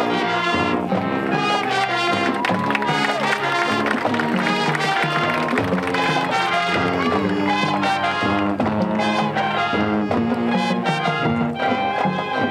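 High school marching band playing on the field, its brass section carrying the tune in a steady rhythm over drums.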